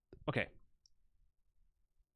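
A man says "okay", just after one short, sharp click. After the word come only a couple of faint ticks.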